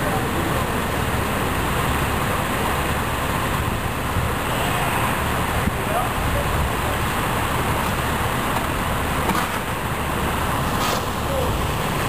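Steady rushing noise of water pouring from a fire hydrant sheared off by a car, flooding the street.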